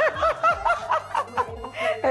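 A woman laughing: a quick run of short pitched ha's, about five a second.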